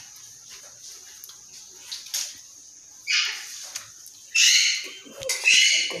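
A bird squawking in the background: three harsh calls, the first about three seconds in and two more near the end, after a quiet first half.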